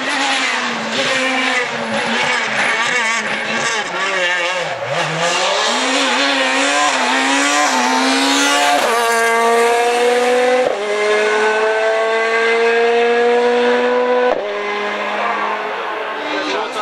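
Ford Fiesta S2000 rally car's two-litre four-cylinder engine working hard on a stage. Its pitch swings up and down with throttle over the first half, then climbs steadily in long pulls with sharp breaks at each upshift.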